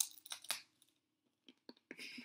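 Dry, stale baguette crust crunching as it is bitten and chewed: a quick run of crisp crackles in the first half-second, then a few faint clicks near the end.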